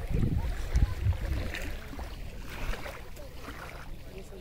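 Wind buffeting the microphone, heaviest in the first second and a half, over small waves lapping on a pebble lakeshore.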